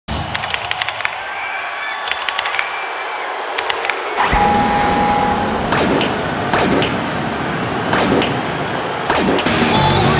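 Electronic intro sound effect of a computer connecting: rapid clicks and short beeps for about four seconds, then a sudden dense hiss with a steady tone and slowly rising high whistles.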